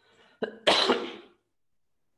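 A man coughing: a short catch about half a second in, then one loud, harsh cough lasting under a second.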